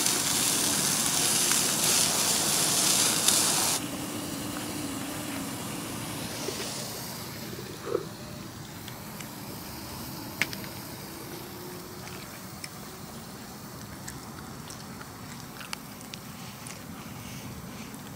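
Gas torch hissing as it blows its flame into a small box grill, cutting off abruptly about four seconds in. After that, a much quieter hiss with a few faint clicks.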